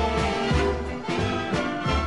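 Orchestral show-band music with brass, played without singing, over a pulsing bass line.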